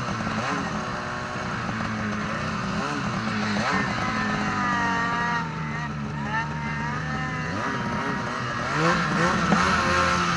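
Snowmobile engine running hard through deep powder, its revs rising and falling as the throttle is worked, with a long drop and climb in pitch midway and revs building again near the end.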